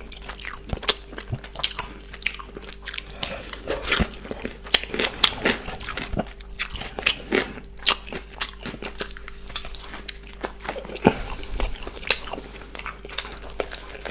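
Close-miked biting and chewing of a double-decker chicken burger: irregular crunches of the coated chicken and bun mixed with wet mouth clicks, coming several times a second.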